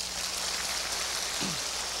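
Large audience applauding, a steady dense clapping.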